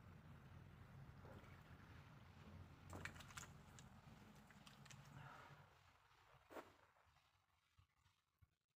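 Near silence: a faint low rumble that fades out over the last couple of seconds, with a few faint clicks about three seconds in and one more near the end.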